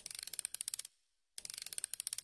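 Rapid ratchet clicking, like a spring being wound, in two bursts of just under a second each with a short pause between.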